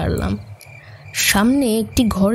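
Crickets chirping steadily as a night-time background. A voice speaks briefly at the very start and again past the middle.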